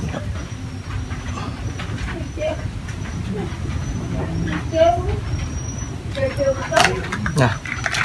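Steady low rumble with faint, scattered voices over it, and a few sharp handling clicks near the end.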